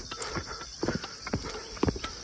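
Footsteps on a stone-paved trail: short knocks at a walking pace of about two steps a second.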